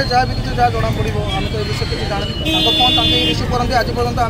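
A man talking in the foreground over traffic noise, with a vehicle horn sounding one steady note for just under a second about two and a half seconds in.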